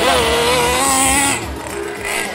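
Small radio-controlled drift car's electric motor whining as it drives off, its pitch rising slightly and then easing off about a second and a half in.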